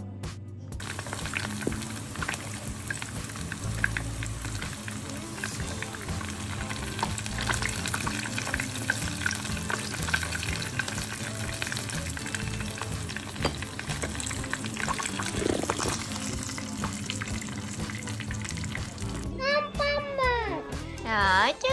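Pastéis (Brazilian filled pastries) sizzling and crackling as they fry in shallow oil in a frying pan, the sizzle starting about a second in.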